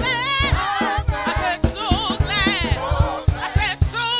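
Gospel praise team singing through microphones, the lead voices bending and wavering in long held notes, over a steady low beat from the band.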